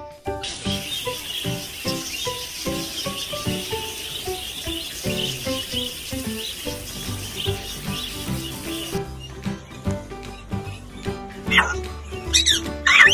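A flock of budgerigars chattering and chirping in a dense, continuous twitter, over background music. The chatter stops about three-quarters of the way through, and a few louder swooping calls come near the end.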